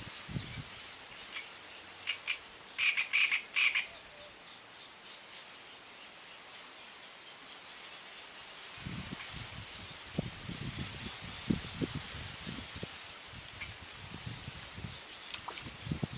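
A frog croaking several times in quick succession about three seconds in, over a quiet outdoor background. From about nine seconds in come irregular low knocks and rustles.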